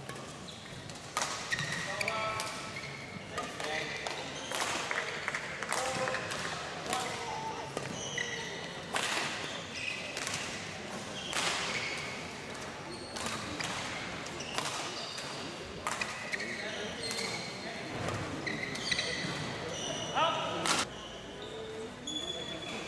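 Badminton rally: sharp racket strikes on the shuttlecock every second or two, with short high squeaks of court shoes on the floor between the shots.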